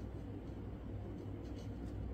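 Marker tip scratching across paper in short strokes while colouring in, over a low steady hum.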